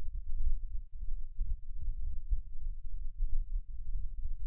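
Low, uneven background rumble on the microphone, with nothing higher-pitched over it.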